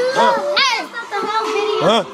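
Excited shouting and yelling from several young voices talking over one another, with high swooping whoops, too jumbled to make out words.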